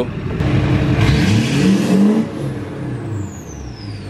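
Duramax LLY 6.6-litre V8 turbodiesel revved once through large five-to-seven-inch exhaust tips: the engine note climbs about a second in, peaks near the middle and drops back to idle. A high whistle falls in pitch as the revs come down.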